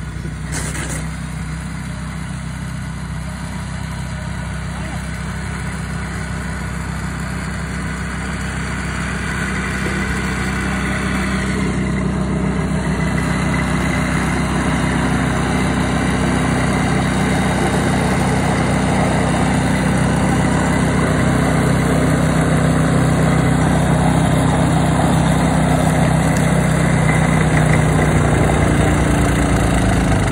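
Walk-behind snowblower's small gas engine running steadily while it throws snow, growing louder in the second half.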